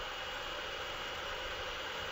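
Steady low background hiss with a faint, constant high-pitched whine: the recording's room tone between speech.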